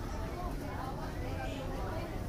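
Faint, indistinct speech over a steady low hum of room noise.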